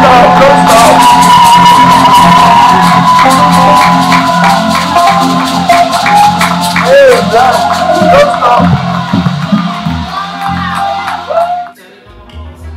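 Music with a steady bass line over a crowd of wedding guests cheering, whooping and clapping. The music and crowd noise fall away abruptly near the end.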